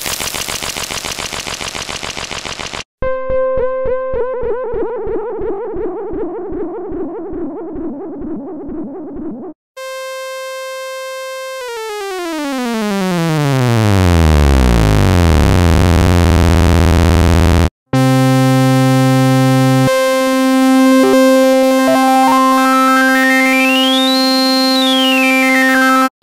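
Four harsh analog synthesizer effect one-shots played one after another. First a short harsh buzz, then a rapidly pulsing pitched tone that slowly fades. Then a held note that sweeps steadily down in pitch, and last a held drone with a tone that glides up high and back down near the end.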